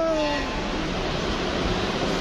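A spoken word is held and trails off in the first half-second, then a steady, even wash of background noise from a large, crowded indoor hall, with no distinct events.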